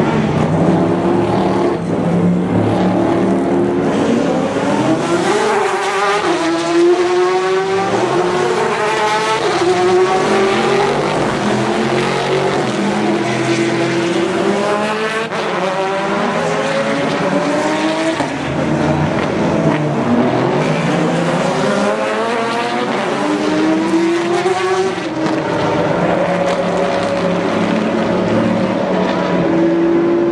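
Several race cars' engines running hard as they pass along the track, overlapping one another. Their pitch climbs in repeated steps as the cars accelerate up through the gears.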